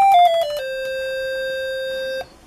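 A PSoC microcontroller signal generator plays through a small speaker. It runs quickly down a scale in four short stepped notes, then holds a steady 523 Hz tone (C) with many bright overtones. The maker thinks this waveform was probably a square wave.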